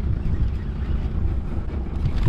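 Steady low rumble of wind buffeting the microphone on an open boat on the river.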